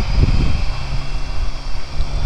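A BMW K1600GT's inline-six engine runs at a steady cruise, a constant low hum, under heavy wind rush on the microphone as the bike is ridden through bends.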